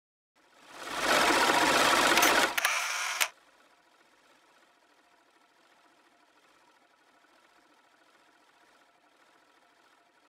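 A short mechanical whirring rattle that swells in, runs loud for about two seconds, ends in a few clicks and cuts off suddenly about three seconds in.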